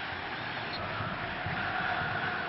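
Football stadium crowd noise: a steady wash of many voices from the stands, growing slightly louder toward the end.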